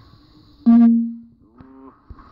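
A loaded steel Olympic barbell with bumper plates dropped onto the lifting platform: a sudden loud impact, then the bar rings with a low steady tone that dies away over about half a second. A second, weaker knock and brief tone follow about a second later.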